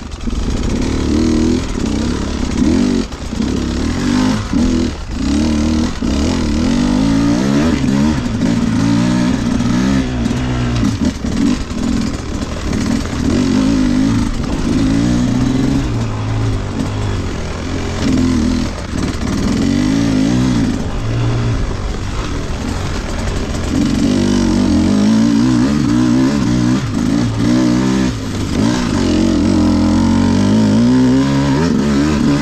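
Enduro dirt bike engine, heard close from the rider's position, revving up and down again and again with the throttle over rough ground. It holds louder and steadier revs in the last several seconds.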